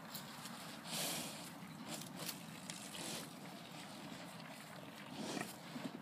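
Calves nosing at an orange in the grass: breathy snuffling, with one louder rush of breath about a second in, and a few light knocks and rustles.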